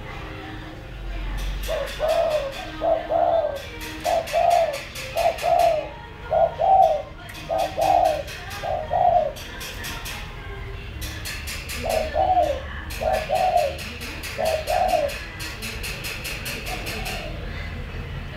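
Caged spotted dove cooing: a run of repeated coo notes lasting about seven seconds, a pause of a few seconds, then a shorter run of about four coos.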